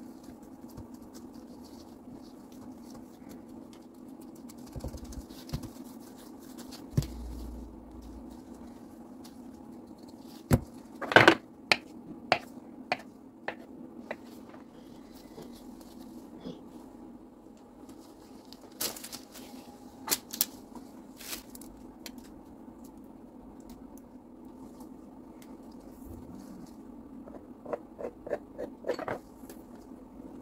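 Gloved hands rolling and shaping soft yeast dough on a wooden board: soft handling sounds with scattered sharp clicks and taps, bunched about a third of the way in, about two-thirds through and near the end, over a steady low hum.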